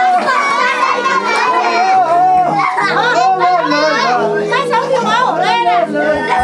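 Many young children shouting and chattering at once, a loud, steady din of high voices with no single speaker standing out.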